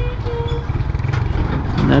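A Honda motorcycle engine running at low speed in slow traffic, a steady low pulsing rumble, with a short steady squeal-like tone in the first half-second.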